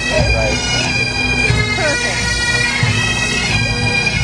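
Great Highland bagpipes playing a tune over their steady drones.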